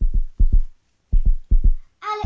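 Deep, thudding kick-drum beat of a backing track: short low thumps in pairs, about two pairs a second.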